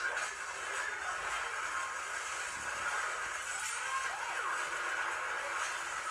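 Film trailer soundtrack played back through a speaker: a steady, thin music bed with little bass.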